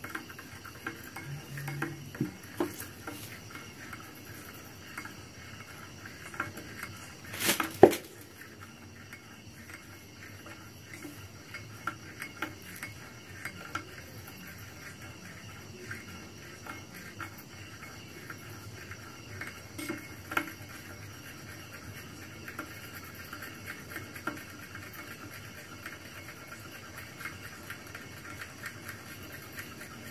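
Metal spoon stirring dark acid slurry in a small glass bowl, clinking and scraping against the glass over and over. A single louder clink comes about eight seconds in, and a smaller one about twenty seconds in.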